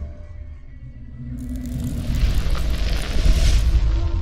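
Cinematic logo sting: a deep rumble swells under a low musical pad, and a loud rushing hiss comes in suddenly about a second and a half in.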